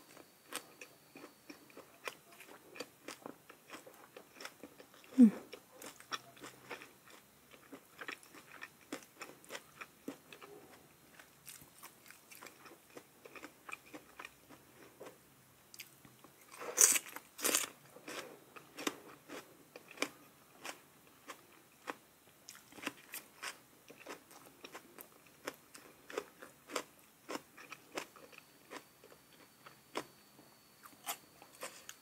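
Close-miked eating: a person bites and chews crunchy raw vegetables with chili paste, making many small wet crunches and clicks. A brief low hum-like sound comes about five seconds in, and a loud double crunch of a bite comes about seventeen seconds in.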